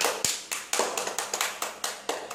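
A rapid, uneven run of sharp taps, about five or six a second.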